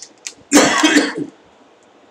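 A man coughs once, a short, loud, raspy clearing of the throat lasting under a second, about half a second in.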